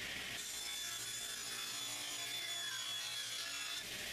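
Table saw ripping a plywood strip against the fence: a steady high whine of the spinning blade mixed with the rasp of the cut, which begins just under half a second in and holds until just before the end.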